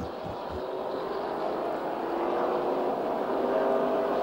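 NASCAR Sprint Cup stock car's restrictor-plate V8 running flat out in the pack, heard through its in-car camera as a steady drone with a few held tones, slowly growing louder.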